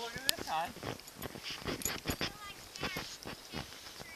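Boxer puppy chewing and tearing at a plush toy: a quick run of gnawing snaps and rustles, with a few short high-pitched squeaks near the start and again around the middle.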